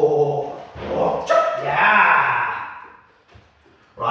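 A young Belgian Malinois vocalizing during tug play, with a drawn-out bark-like call that falls in pitch about a second in. The sound dies away near the end.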